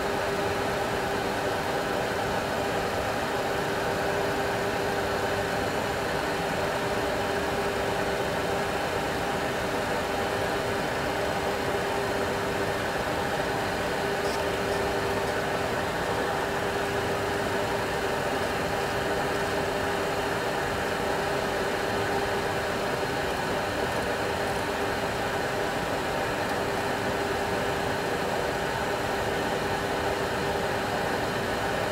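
Steady in-flight cockpit noise of a Boeing 737 Classic full flight simulator: a continuous engine drone and air noise with a steady hum running through it.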